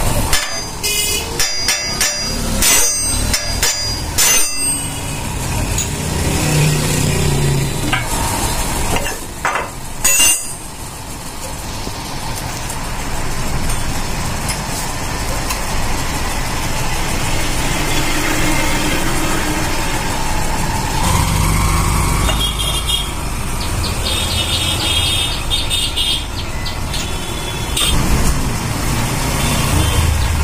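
Sharp metal clanks and knocks from motorcycle crankshaft parts being struck and handled on a steel bench. There is a quick cluster in the first few seconds and a couple more about ten seconds in, then a steady low rumble of traffic and workshop noise.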